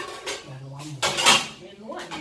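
Metal cooking pot and its lid clanking on a gas stove as the lid is taken off and set down on the stovetop, with the loudest clang about a second in.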